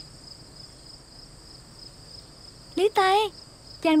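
Crickets chirping in a steady, continuous high-pitched trill. A woman's voice calls out twice near the end.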